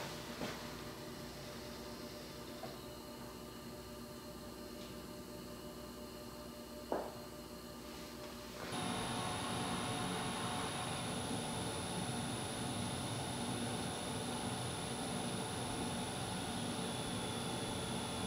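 A Tesla Model 3 charging on a home NEMA 14-50 charger makes almost no sound, just faint room tone with one sharp click about seven seconds in. About nine seconds in, the sound switches to a Tesla Model Y charging: a much louder, steady fan-like noise with a high-pitched whine, which the owner takes for the car heating its battery before it charges at full rate.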